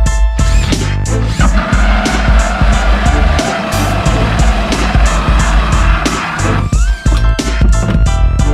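Background music with a steady electronic beat. From about a second and a half in until near the end, a power drill with a hole saw cuts through the plastic wall of a storage tub with a rough grinding sound, stopping about six and a half seconds in.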